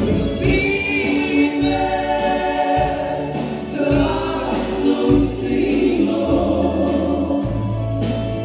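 Live band performance: voices singing together over keyboards, acoustic guitar and drums, with sustained low notes and cymbal strokes.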